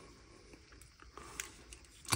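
A few faint clicks and light handling noise as the heatsink-and-fan assembly of a Dell Latitude 7320 laptop is prised up by hand from the motherboard.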